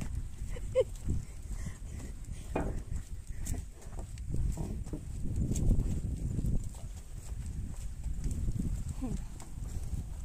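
Wind buffeting a handheld camera microphone during a walk outdoors, an uneven low rumble, with a few footsteps and handling knocks.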